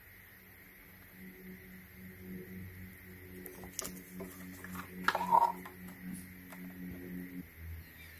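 Faint clicks and plastic scraping as a lithium-ion battery pack is worked by hand out of a handheld vacuum's plastic housing. The busiest and loudest moment comes about five seconds in. A faint steady low hum runs underneath.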